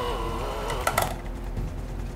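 Electric hand mixer running with its beaters clogged in thick cookie dough, the motor straining with a wavering pitch and two sharp clicks about a second in. The motor is overloaded and overheating, close to smoking.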